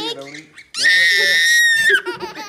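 A toddler's long, loud, high-pitched squeal, held at one steady pitch for about a second and dropping slightly as it cuts off near the end.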